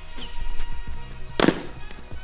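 Background music, with one sharp crack about one and a half seconds in: a tennis ball dropped from a high tower striking a tennis racket. A few fainter knocks come before it.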